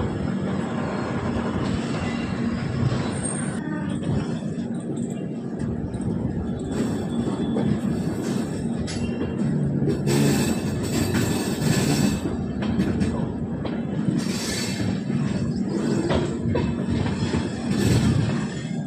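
Passenger train running along the track, heard from its open doorway: a steady rumble of wheels and coaches, with brighter, harsher stretches about ten and fourteen seconds in.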